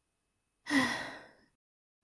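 A woman's single sigh: one breathy exhale, beginning with a brief voiced tone and fading out over under a second, after a stretch of dead silence.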